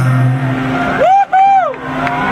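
Live rock concert performance of a song by a male singer with sustained accompaniment. A low sung note is held at the start, then about a second in a loud, high two-part vocal "whoo" rises, holds and falls away.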